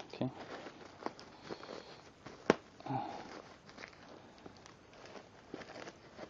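A small clear plastic hardware bag being handled and pulled open with gloved hands: crinkling and rustling with scattered small clicks, the sharpest about two and a half seconds in.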